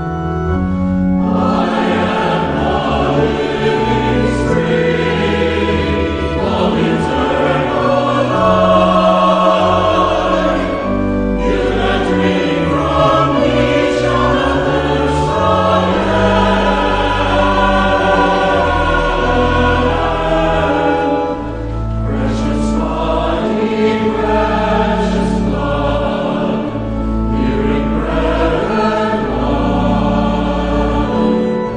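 A hymn sung by voices with organ accompaniment, the organ sustaining steady low notes. The voices come in about a second and a half in and pause briefly between phrases.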